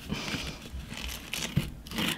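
Soft scraping and crinkling of a metal palette knife spreading thick glitter paste across a plastic stencil, with a few light ticks.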